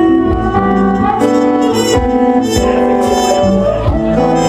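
Live pop band music: strummed acoustic guitar under a lead melody of held notes that step from pitch to pitch about every half second.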